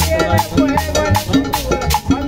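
Live cumbia band playing a steady dance beat on drum kit and congas, with upright bass notes underneath.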